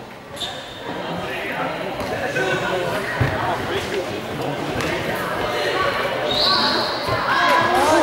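Basketball being bounced on a hardwood gym floor by a player at the free-throw line before the shot, over steady crowd chatter.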